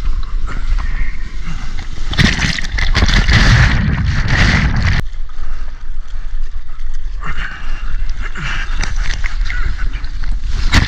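Water splashing and sloshing around a surfboard as a surfer paddles through shorebreak, picked up close by a mouth-held action camera at the water's surface, over a steady low rumble. It grows louder and rushing for a few seconds, starting about two seconds in, and again for a couple of seconds near the end.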